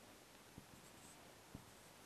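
Near silence: faint dry-erase marker strokes on a whiteboard over low room hiss, with two soft taps, about half a second and a second and a half in.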